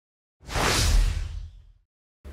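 An edited whoosh sound effect with a deep low boom under it, swelling in about half a second in and fading away before the end, as a transition for a logo reveal.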